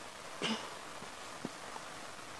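Marker writing on a whiteboard: a brief, louder scratchy stroke about half a second in and a short tap about a second later, over a steady background hiss.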